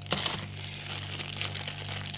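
Cellophane wrapping on a packaged Christmas bell decoration crinkling as it is handled and laid down on a table, with a light tap just after the start.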